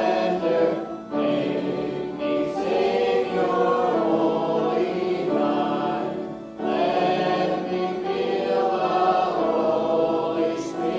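Church congregation singing a hymn together in unison, long held phrases with short breath breaks about a second in and again around six and a half seconds in.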